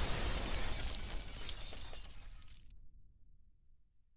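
Logo-sting sound effect of crumbling, shattering rubble over a low rumble, dying away. The crackle of debris cuts off sharply a little under three seconds in, and the rumble fades out to near silence by the end.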